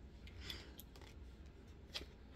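Oracle cards being handled: a soft swish of card about half a second in and a light click near the end.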